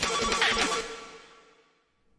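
Electronic logo sting: a short musical sound effect with a ringing tone that dies away within about a second and a half.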